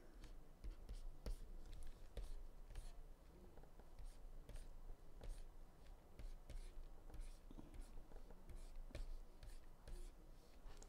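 Faint, irregular scratching and tapping of a stylus on a graphics tablet during digital sketching, in many short strokes.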